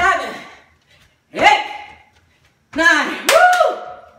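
A woman's short, pitched shouts of effort, about one every second and a half in time with her jump squats, some starting with a sharp landing smack. Near the end comes a longer held call.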